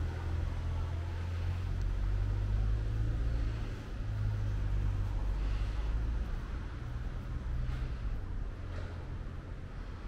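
Low, steady rumble of a nearby motor vehicle's engine running, easing off about six seconds in.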